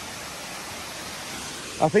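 Steady, even rush of Hickory Nut Falls, a waterfall over 400 feet high, with no change in level.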